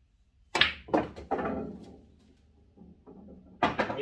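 A pool draw shot with bottom-right English: the cue tip strikes the cue ball about half a second in, then come sharp clacks of ball on ball and a ball knocking into the pocket, with a short ringing tail. Another knock comes near the end as the cue ball comes back off the rail.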